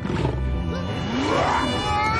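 Fantasy film soundtrack: orchestral score with deep, growling roars from the trolls as the fight begins.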